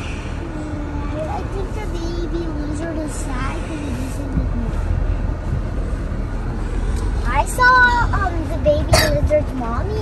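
Low steady rumble of a Jeep Gladiator driving slowly over a rough dirt trail, heard from inside the cab, under indistinct voices. A louder voice rises over it about three quarters of the way through.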